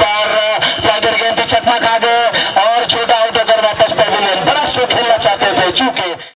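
A person's voice, loud and continuous, with short knocks behind it.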